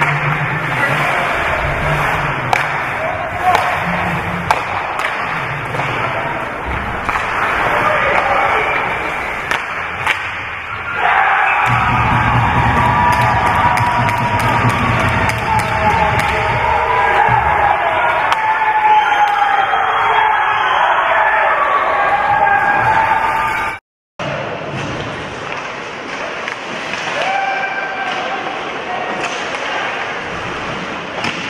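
Rink sound of an amateur ice hockey game, with spectators' voices and the knock of sticks, puck and boards. About eleven seconds in, the crowd breaks into loud cheering for a goal that lasts about ten seconds. The sound then cuts out briefly and returns quieter.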